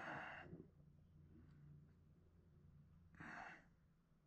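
Two breaths out, like sighs: one at the start and one about three seconds in, each about half a second long, over a faint steady low hum.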